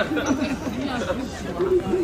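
Chatter of people talking close by.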